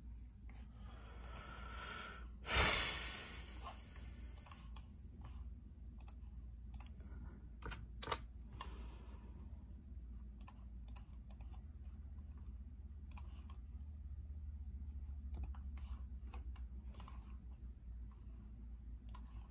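Sparse keystrokes on a computer keyboard and clicks, over a steady low hum, with one louder brushing noise about two and a half seconds in that fades over about a second.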